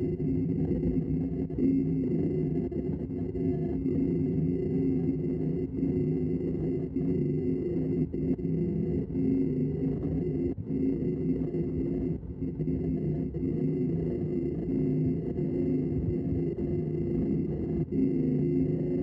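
Laguna Revo 18|36 wood lathe running with a steady motor whine while a bowl gouge hollows a freshly cut pignut hickory bowl blank, the cutting noise dipping briefly between passes.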